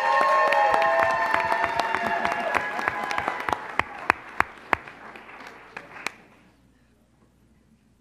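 A room full of people applauding, with several voices whooping and cheering over the clapping at first. The applause thins to a few scattered claps and stops about six seconds in.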